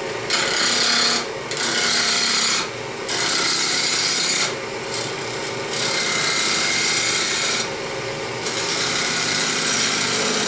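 A gouge cutting a small wood blank spinning on a lathe, truing up its bandsawn, not-quite-round edge: about six cutting passes of one to two seconds each, with short breaks between them, over the steady hum of the lathe.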